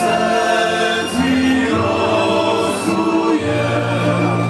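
Male vocal ensemble singing in close harmony on long held notes, accompanied by double bass and guitars.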